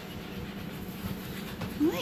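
Faint sounds from a young American Bully puppy, eyes just opened, as he is held and turned in a hand, over a steady low hum. A woman's high-pitched voice starts near the end.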